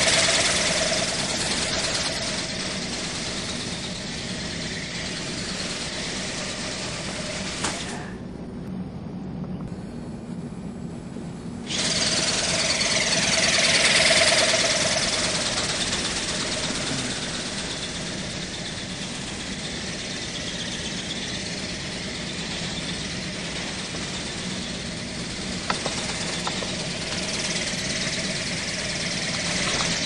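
WowWee Dragonfly RC ornithopter in flight: its small electric motor and flapping wings make a steady buzz. The buzz swells louder twice, cuts out for about four seconds after the first third, then starts again.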